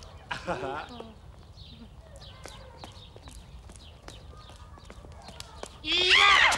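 Footsteps of two people walking, a faint, fairly regular tapping, with a short vocal sound about half a second in.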